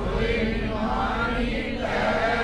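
Soft devotional chanting: steady held notes with faint group voices, much quieter than the lead singer's voice.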